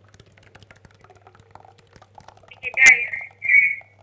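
A caller's voice over a studio telephone line, faint and garbled at first, then two short loud crackly bursts about three seconds in, over a steady low hum.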